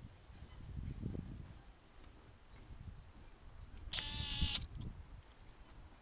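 Low, uneven rumble of wind and handling on a handheld camera's microphone. About four seconds in comes one short, steady, high-pitched tone, like a beep, lasting just over half a second.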